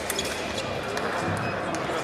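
Fencers' footwork thumping on a piste over a wooden gym floor during a close exchange, with scattered short clicks, against the steady noise and voices of a large sports hall.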